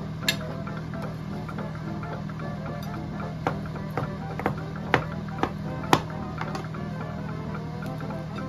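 Background music, with a chef's knife striking the cutting board in sharp taps as cooked chicken breast is sliced: one tap just after the start, then about six over a couple of seconds past the midpoint.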